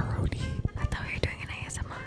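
Two people whispering to each other close to a handheld microphone, breathy and hissy, with a sharp knock right at the start.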